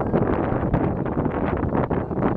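Wind buffeting the camera's microphone, a loud, irregular rumble.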